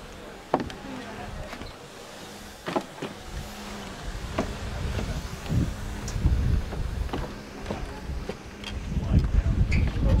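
Footsteps on wooden deck boards, with sharp knocks about once a second and heavier low thuds and camera bumps from about halfway through, over a faint steady low hum.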